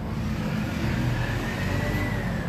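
A motor vehicle's engine running nearby: a steady low rumble with a faint whine that rises slowly toward the end.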